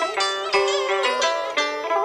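Instrumental passage of Vietnamese traditional tân cổ music: plucked string instruments playing a melody of short picked notes and held notes with a wavering vibrato.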